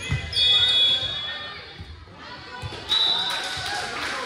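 Volleyball rally in a gym: the ball thuds off players' arms and hands amid voices, with a high, steady tone about half a second in and a shorter one near three seconds.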